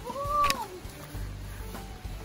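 A drawn-out, arching meow-like call, cut through about half a second in by a sharp mouse-click sound effect from an animated Subscribe button, over background music.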